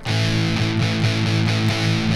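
Electric guitar through a heavily distorted metal amp tone: an A power chord (open fifth string with the fourth and third strings at the second fret) struck once and left to ring steadily.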